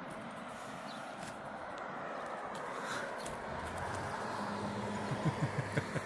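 Road traffic passing on the street: a steady tyre and engine noise that grows a little louder, with a low engine hum joining past the middle. Near the end come a few short, low pulses, about five in a second.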